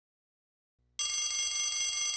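Silence, then about halfway in an electric school bell starts ringing: a steady, high, metallic ring.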